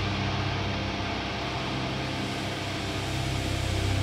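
Heavily distorted electric guitar tuned to drop C, a Telecaster, letting a low chord ring out as one steady drone with no drum hits, growing a little louder near the end.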